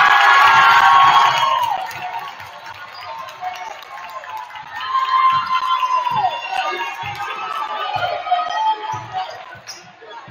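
Gym crowd cheering and shouting as a basket is scored, dying down about two seconds in. Then scattered shouts from the stands, one louder burst around the middle, over a basketball being dribbled on a hardwood floor, roughly one bounce a second.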